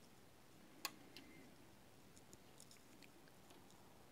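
Near silence, with one sharp click about a second in and a few fainter ticks after it, from plastic drone bodies being handled on a tabletop.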